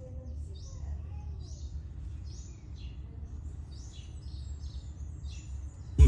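A bird chirping repeatedly, short high calls about twice a second, over a steady low background rumble.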